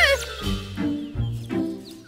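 Orchestral cartoon background score, with held notes over a bass line that steps to a new note about twice a second. It opens with a short, high cry whose pitch arches up and down, like a cartoon pet's squeak.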